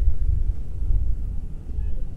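Wind buffeting an open microphone: an uneven low rumble with no steady pitch.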